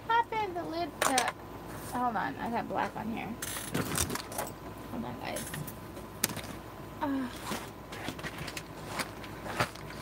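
Scattered clicks and knocks of craft tools being handled on a tabletop: a clear acrylic stamp block inked and pressed onto cardstock, then set down. A few short wordless vocal sounds come near the start and about two seconds in.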